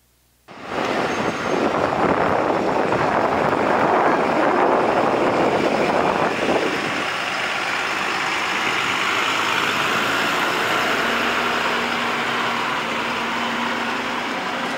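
Large coach bus engine running close by, a steady noisy rumble that starts abruptly and eases a little partway through.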